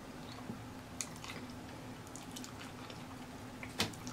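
Faint, wet chewing of a mouthful of cheese-dipped, hot-Cheeto-crusted fried turkey leg, with a few soft mouth clicks about a second in.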